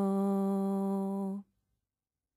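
A woman's voice holding one long sung note at the end of a recorded acoustic song; it cuts off abruptly about a second and a half in, leaving silence.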